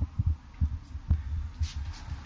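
Irregular low thumps and rumble on the microphone, several a second, from the camera being handled or buffeted.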